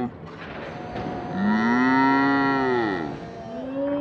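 A long, drawn-out, moo-like call, rising and then falling in pitch, followed near the end by a shorter one.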